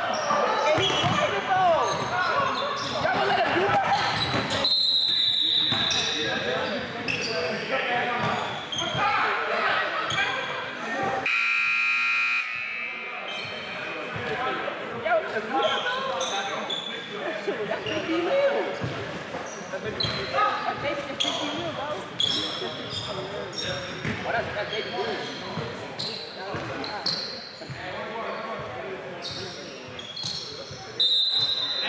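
A basketball bouncing on a hardwood gym floor, with players' voices echoing around a large hall. About eleven seconds in, a steady electronic buzzer, such as a scoreboard horn, sounds for about a second and a half.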